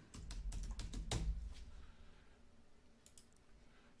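Typing on a computer keyboard: a quick run of key taps in the first second and a half, then a few faint clicks about three seconds in.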